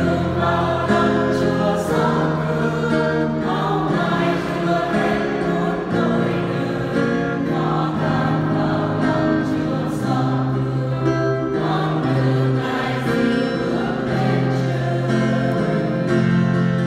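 A mixed church choir of women's and men's voices singing a Vietnamese Catholic hymn in parts, in long held notes that change every second or two.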